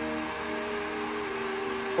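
Electric heat gun running steadily, a fan hum with several held tones over a rush of air.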